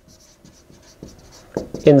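Dry-erase marker writing on a whiteboard: a run of short, faint squeaky scratches, one per stroke. A man's voice comes in near the end.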